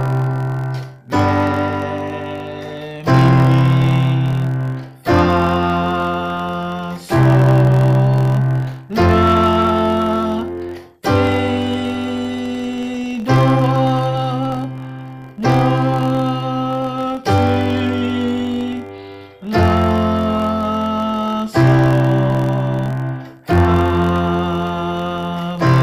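Yamaha PSR arranger keyboard on a piano voice, played with full two-handed chords that step through the major scale. A new chord is struck about every two seconds and rings, fading, until the next.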